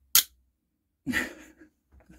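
A short, sharp, hissing noise just after the start, then a brief low voiced sound from a man about a second in.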